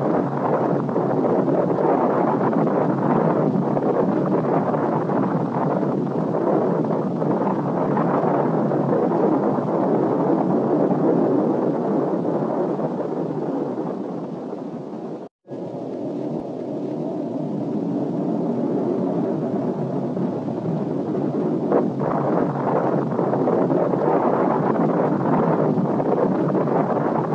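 A rocket exploding and its fireball burning: a loud, steady noise without let-up, broken by a brief drop-out about fifteen seconds in.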